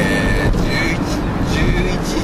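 Steady engine and road rumble inside the cabin of a moving van.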